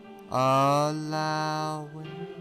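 Slow meditation background music: over a soft drone, a sustained, steady-pitched tone swells in about a third of a second in, holds for about a second and a half, then fades away.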